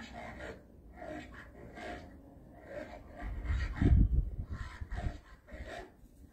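A gust of wind buffeting the microphone as a low rumble, starting about three seconds in, loudest about a second later, and dying away after about two seconds.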